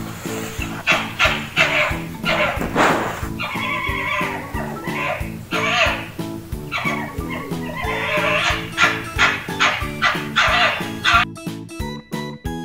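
A red fox calling over cheerful background music. Its many short calls follow one another with brief gaps and stop shortly before the end.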